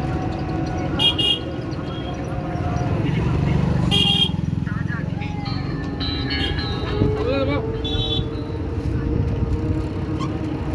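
Busy street-market bustle: a steady traffic rumble with voices, cut by short vehicle-horn toots about a second in, at about four seconds and again near eight seconds.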